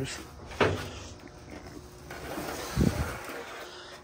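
Handling and movement noises: a short knock about half a second in, then scuffing and a dull low thump near three seconds.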